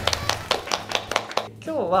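A small group of people clapping their hands, a quick run of claps that stops about one and a half seconds in.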